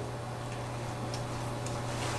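Room tone: a steady low hum with a couple of faint ticks.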